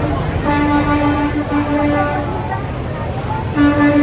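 Semi truck's horn blowing in several short blasts from about half a second in, then sounding again near the end, over the low rumble of its engine.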